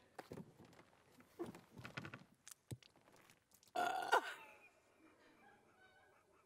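A person making short wordless vocal noises, mixed with a few sharp knocks, with a louder voiced sound that falls in pitch about four seconds in.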